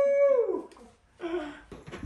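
A person's drawn-out vocal exclamation, held on one pitch and then falling away within the first half second, followed by a short vocal sound about a second later.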